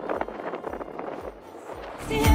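Wind buffeting the camera microphone while riding a gravel bike over rough grassy ground, with light rattling clicks from the bike and low pulses about twice a second.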